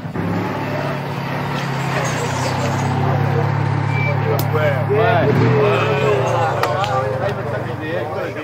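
Citroën 2CV's air-cooled flat-twin engine running steadily as the car pulls in, then stopping about six and a half seconds in. Indistinct voices call out over it in the second half.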